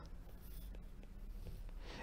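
Faint ticks and scratches of a stylus writing a word on a tablet's glass screen.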